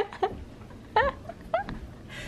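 A few short, high-pitched vocal squeaks from a person, each rising and falling in pitch, the longest about a second in.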